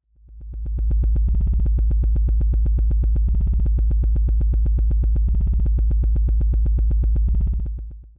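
A low, buzzing synthesizer drone pulsing rapidly and evenly, fading in over the first second and fading out near the end.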